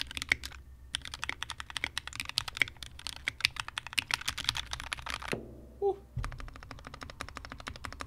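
Typing on a modded Anne Pro 2 60% mechanical keyboard whose case is filled with two layers of car sound-dampening material: a dense run of pretty muted key clacks. They stop for about a second just after five seconds, then a quicker, evenly spaced run of key presses follows.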